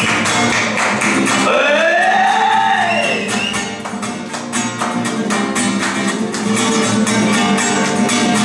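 Live acoustic guitar strummed in a fast, steady percussive rhythm, with a high tone that slides up and then back down about two seconds in.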